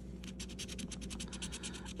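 A coin scratching the coating off a scratch-off lottery ticket in rapid short strokes, many a second.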